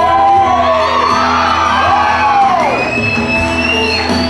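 A girl singing into a microphone over instrumental accompaniment, her voice arcing up and down through long sliding notes and holding a high note near the end.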